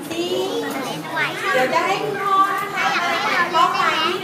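Young girls' voices, high-pitched and close, talking over one another without pause.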